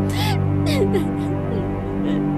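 A woman crying hard: several short wailing sobs with falling pitch in the first second or so, over a sustained, dark music score.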